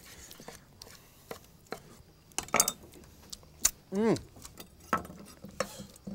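Chef's knife chopping grilled chicken on a wooden cutting board: a scatter of sharp, irregular knocks of the blade on the board, a few close together about two and a half seconds in.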